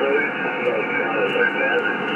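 Single-sideband voice received on the 20-metre amateur band through an Icom IC-756PRO2 transceiver's speaker: indistinct, overlapping voices of stations calling, thin and cut off above about 3 kHz.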